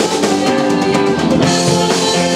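Rock band playing live at full volume: drum kit with cymbals, guitar, and a woman singing held notes.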